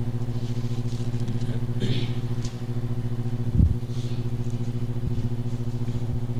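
Steady electrical hum at about 120 Hz with evenly spaced overtones, unchanging in pitch: mains buzz in the sound system. A few soft rustles and a low knock about three and a half seconds in, as pages are handled at the lectern.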